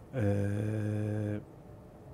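A man's long hesitation filler, a drawn-out "eee" held at one steady pitch for about a second.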